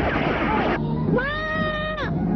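A child's high wailing cry, rising about a second in and then held as one long note, over dramatic film music.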